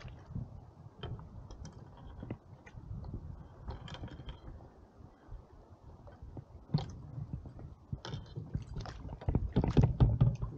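Small splashes and water lapping against an inflatable packraft while a small trout is brought alongside and handled, with scattered knocks and clicks of gear on the boat. A low wind rumble runs on the microphone. The handling noise gets busier about seven seconds in and again near the end.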